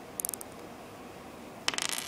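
Plastic Lego pieces clicking as they are pulled apart and handled: a few quick clicks just after the start, then a rapid run of clicks near the end.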